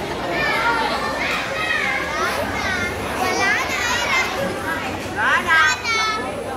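A young girl's voice speaking into a microphone, telling a story, with a louder, higher-pitched stretch of voice near the end.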